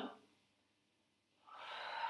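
A woman's audible breath: after a near-silent second, a soft rush of air builds up through the last half second, drawn while moving through a cat-cow stretch.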